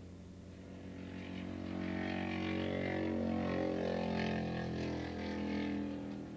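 Racing motorcycle engines at high revs, growing louder as two bikes come through a turn toward the listener, loudest in the middle and back half.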